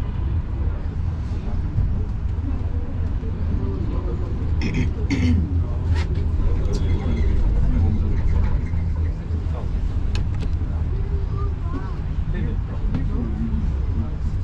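Steady low rumble of the Roosevelt Island Tramway cabin running along its cables, growing louder for a few seconds in the middle as it passes a steel support tower, with a few sharp clicks about five and six seconds in.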